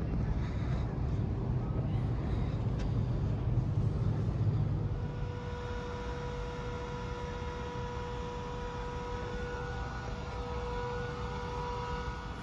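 Recorded aircraft auxiliary power unit (APU) noise played over speakers: a steady turbine whine with several held tones, coming in about five seconds in after a low rumble.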